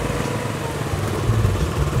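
Small motor scooter engine running steadily as the scooter is ridden along, with a low, rapid engine pulse.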